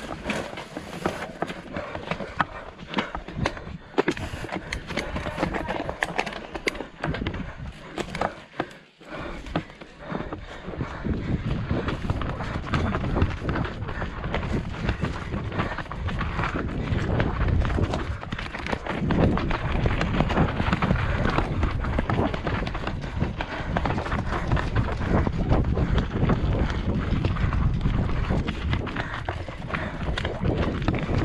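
Mountain bike on a dry dirt and rock downhill trail, heard from a helmet camera: tyres on loose ground and the bike rattling and clicking over rough terrain, patchy for the first ten seconds, then a steady, louder rush of tyre noise and wind on the microphone as speed builds.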